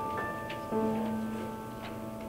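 Soft piano music: a few notes struck and held, with a low bass note coming in under a second in.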